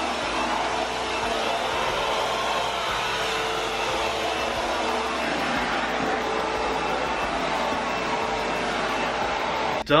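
Vacuum cleaner running steadily as its metal wand and floor tool are pushed over carpet: a constant rushing whir with a faint steady hum. It cuts off just before the end.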